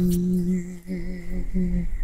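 A man's voice singing unaccompanied, holding one long low note that then breaks into two shorter notes, stopping shortly before the end.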